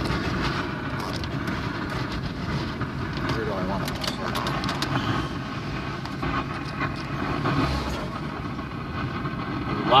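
Steady vehicle noise, cars running on the road, with faint indistinct voices of people talking.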